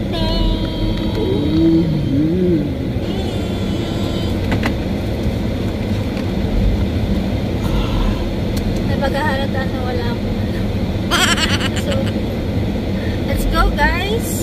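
Steady low rumble of a car's engine and road noise heard inside the cabin, with people talking over it now and then.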